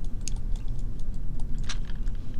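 Scattered light clicks of a computer mouse and keyboard, with a small cluster near the end, over a steady low hum.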